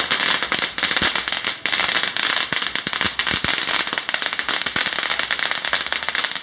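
A long string of firecrackers going off: a dense, rapid, unbroken run of sharp cracks.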